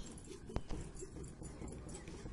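A small kitchen knife cutting a lemon on a steel plate, with a sharp click about half a second in as the blade meets the plate, then a smaller one.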